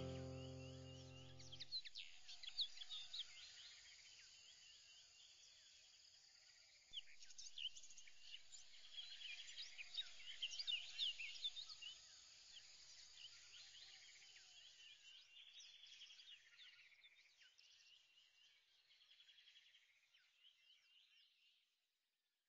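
Faint birdsong: many quick chirps and whistles that get louder about seven seconds in and fade out near the end. Background music chords die away in the first two seconds.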